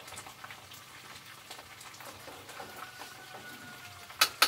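Tortillas frying in hot oil: a steady, light crackle like rain.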